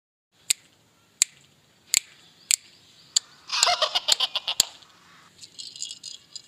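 Five short sharp clicks, spaced a little over half a second apart. They are followed, about three and a half seconds in, by roughly a second of clattering as a yellow plastic duck baby rattle is handled and shaken.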